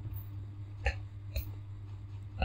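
A low steady hum with two faint, short mouth noises from the reader, about half a second apart.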